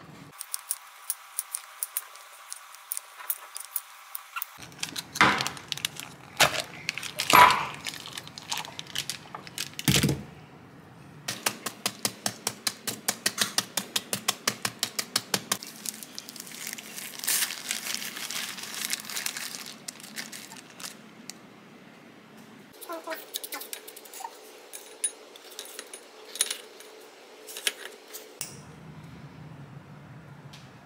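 Chef's knife chopping an orange-fleshed melon on a plastic cutting board: runs of quick, even taps of the blade on the board, with a few louder single knocks in between.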